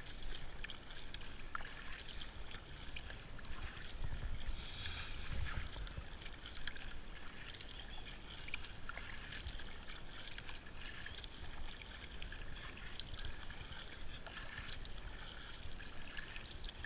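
Kayak paddle strokes: the blades dipping and pulling through calm water with a steady wash of splashes and drips. A low rumble swells about four to six seconds in.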